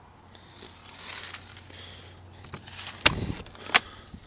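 Camper trailer door being unlatched and pulled open: rustling and handling noise, then two sharp clicks about three seconds in, three-quarters of a second apart, the first with a low thump.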